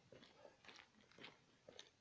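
Near silence with a few faint, irregular ticks.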